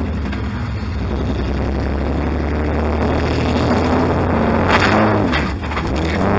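A demolition derby car's engine running under way, heard from inside its stripped-out cabin, with a few sharp knocks or clanks about five seconds in.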